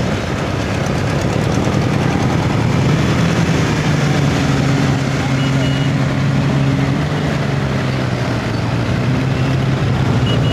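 Several motorcycle engines, sidecar outfits among them, running steadily at low revs as they ride slowly by, with voices in the background.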